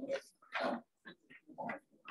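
Faint, indistinct voices talking away from the microphones, in short broken bursts with pauses between them.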